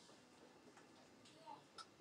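Near silence: room tone in a pause of speech, with two faint short clicks near the end.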